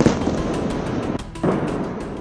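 Explosion blasts: a sharp boom at the start, then a rumbling roll of noise that swells again about a second and a half in, laid over background music.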